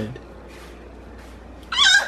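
A toddler's brief high-pitched squeal near the end, after a short stretch of quiet room tone.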